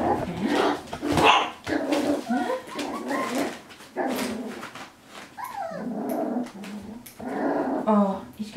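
A litter of young puppies barking and growling, with many short high calls, some sliding up or down in pitch.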